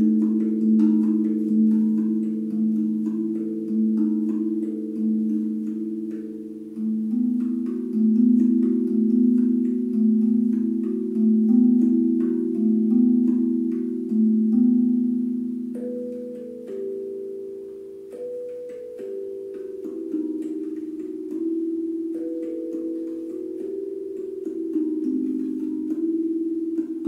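A handpan tuned to E Romanian minor (E3 A3 B3 C4 D#4 E4 F#4 G4 A4 B4), played with the fingers: a slow melody of struck notes that ring on and overlap one another. Higher notes join in a little past the middle.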